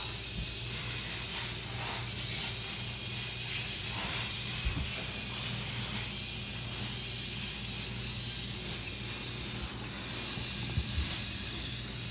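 VEX IQ V-Rex walking robot's single motor and plastic gear train running, a high, even whirring noise that swells and fades about every two seconds with each stride, with a few light knocks as the feet step.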